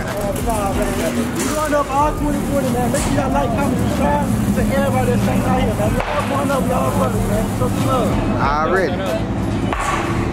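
Several people talking over one another, a crowd's chatter with no one voice standing out, over a steady low hum that sets in about two seconds in and fades near the end.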